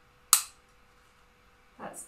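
Ajovy autoinjector giving one sharp click about a third of a second in: the click that signals the injection is done.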